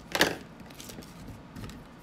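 Paper rustle from a hand rubbing down a sheet of patterned cardstock, burnishing the tape adhesive underneath. There is one short rustle about a quarter second in, then faint scuffing.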